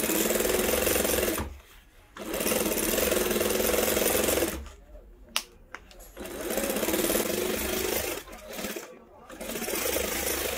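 SunStar industrial lockstitch sewing machine stitching leather in short runs of fast, steady needle strokes lasting one to two seconds each, with brief pauses between. A sharp click falls in the pause about five seconds in, and a fourth run starts near the end.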